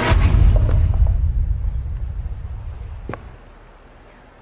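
A deep boom with a long rumbling fade, swelling in just before and dying away over about three seconds, with a sharp click a little after three seconds in.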